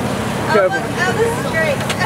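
Voices talking over the steady noise of road traffic passing close by.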